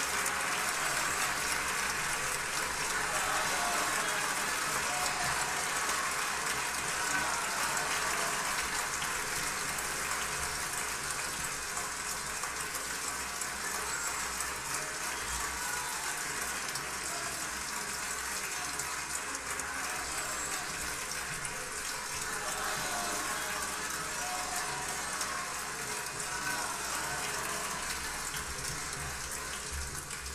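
Concert audience applauding steadily, with some voices in the crowd, the clapping tapering off toward the end.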